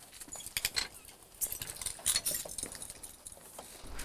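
Screwdriver turning a screw into a house's outer wall: irregular light clicks and short scrapes.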